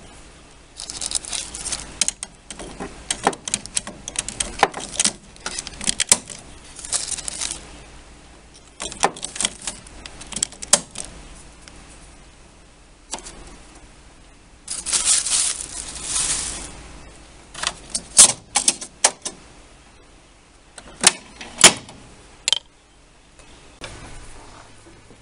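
Plastic ink cartridges being pushed into a Canon Pixma MX922 printhead, a series of irregular clicks and rattles of plastic on plastic as they seat, with a longer rustle about fifteen seconds in.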